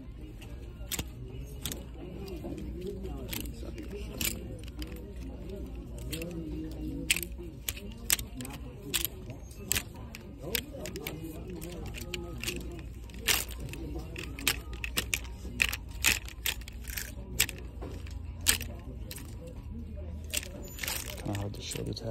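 Plastic clothes hangers clicking against a metal rack and each other as a hand slides them along a tightly packed clothes rail, sharp irregular clicks a couple of times a second, over faint background voices and music.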